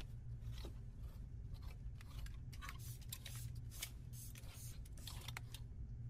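Scissors cutting through paper pattern: a run of faint, irregular snips and paper crackle, stopping shortly before the end, over a steady low room hum.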